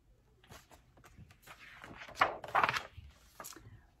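Pages of a hardcover picture book being turned and handled: a run of paper rustles and soft knocks, loudest a little past halfway.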